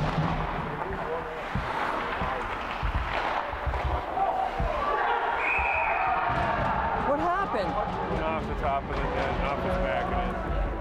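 Indoor ice hockey rink during play: voices from the crowd and bench, dull knocks of sticks and puck against the boards, and a short, steady referee's whistle about five seconds in.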